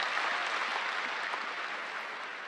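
Large audience in a big hall applauding steadily, easing off slightly near the end.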